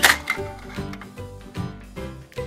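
Background music with a regular beat, with one sharp click right at the start.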